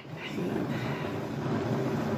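Hand-cranked plastic yarn ball winder being turned, winding yarn into a cake. It gives a steady mechanical whir that starts just after the beginning.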